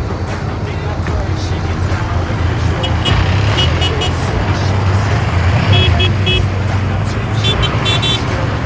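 Motorcycle engines running as a group of riders pulls away, with clusters of short high horn beeps several times, about three, six and seven and a half seconds in.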